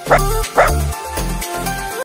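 A dog barks twice, about half a second apart, near the start.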